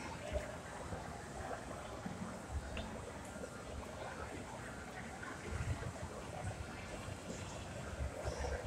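Background hubbub of a large indoor hall: faint distant voices and room noise, with a few low thumps, the strongest cluster a little past the middle.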